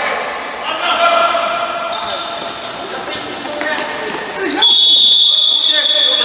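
Futsal play in a sports hall: shouting players and short squeaks of shoes on the court. About three-quarters of the way through, a referee's whistle starts a single long, shrill blast that is held, stopping play with a player down.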